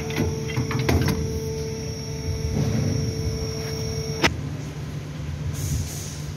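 A steady low hum with a few light clicks and knocks of metal parts being handled. A steady higher tone underneath cuts off suddenly with a click about four seconds in.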